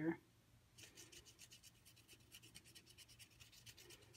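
Water brush scrubbing over watercolor paper, wiping colour off white embossing: faint, rapid scratchy rubbing that starts about a second in.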